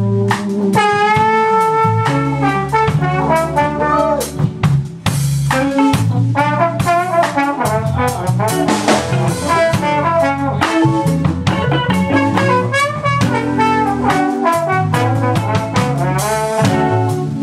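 Live New Orleans funk band: a trombone plays the lead line, with held notes and slides, over electric bass, electric guitar and drum kit.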